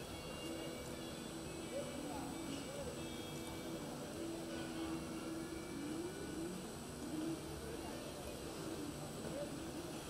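Indistinct voices murmuring in the background of a large indoor arena, over a steady low background noise.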